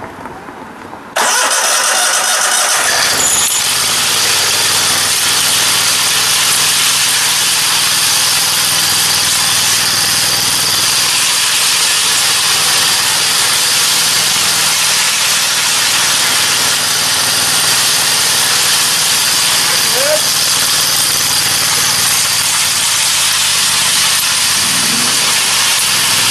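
Kohler 725 V-twin engine of a ride-on power trowel, coming in suddenly about a second in and then running steadily and loudly.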